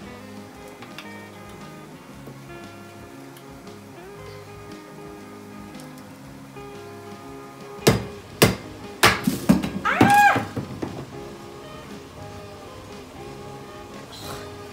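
Chef's knife chopping through a sweet potato onto a wooden cutting board: a quick run of about half a dozen sharp chops a little past the middle, over steady background music.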